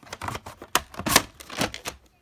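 A plastic VHS cassette and its cardboard sleeve being handled and the tape slid into the sleeve: a quick run of clacks, clicks and scrapes of plastic on card, loudest a little after a second in, then stopping.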